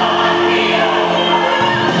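Gospel song: a choir singing with instrumental backing, loud and steady.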